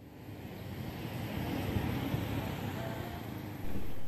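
Steady outdoor background rumble of road traffic, fading in over the first second and a little louder near the end.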